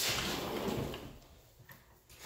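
Rustling handling noise that fades away over the first second and a half, with a faint click near the end.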